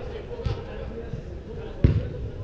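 Soccer ball kicked during play in a large indoor hall: a lighter thud about half a second in, then a loud, sharp thud near the end, both echoing in the hall.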